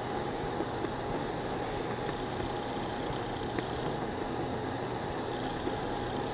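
Steady, even background noise with a faint constant tone running through it and no distinct events: the room's ambient hum and hiss.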